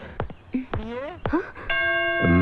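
A voice in short, pitch-sliding exclamations, then near the end a bell-like chime starts and holds as one steady ringing tone.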